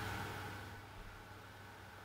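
Faint room tone between words: a steady low hiss with a light low hum, and no distinct sound event.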